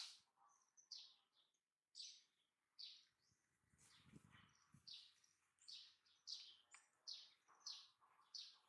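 Faint birds chirping: a run of short, falling chirps, about two a second, with a brief drop-out of all sound a little before two seconds in.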